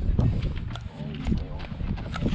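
Men laughing and talking in short bursts over a low steady hum.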